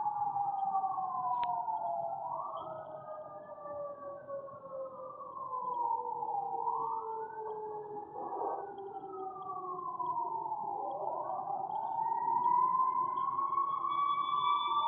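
Several sirens wailing in the distance, their tones overlapping and each slowly rising and falling every few seconds.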